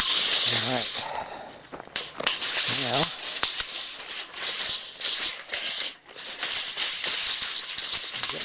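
Footsteps crunching and scuffing over dry, gritty dirt and gravel, in repeated rattly patches about every second and a half.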